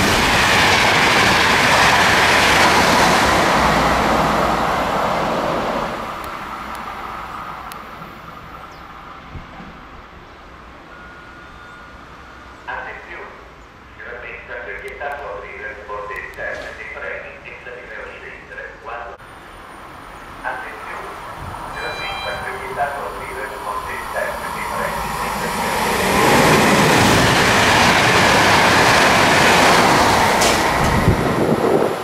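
Intercity train of coaches with an E.464 electric locomotive passing through a station, a loud wheel-on-rail rumble that fades away over about six seconds. Near the end a passing train's rumble builds up loud again.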